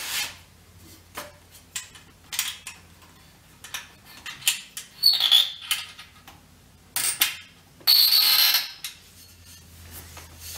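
Handling noises from a telescope's adjustable pier as its height is raised: the pier tubes rubbing and scraping with scattered knocks. There is a short squeak about five seconds in, sharp clicks near seven seconds, and the loudest sound is a longer squealing scrape about eight seconds in.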